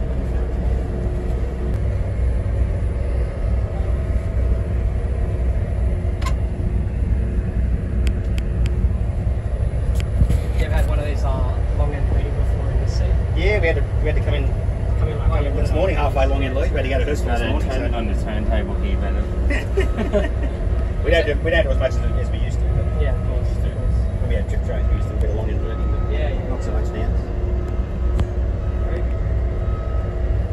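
Steady low hum and rumble of a modern train's onboard equipment inside its driver's cab, with indistinct voices talking in the background through the middle of the stretch.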